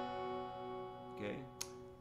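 Hollow-body electric guitar with a capo on the second fret: a single A sus 2 chord shape (open A string, 2 on D and G, B and E open), struck once and left ringing, slowly fading. A short sharp click near the end.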